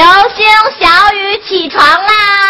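A girl's voice calling a wake-up in a sing-song tune: several short, lilting syllables, then a long held note near the end.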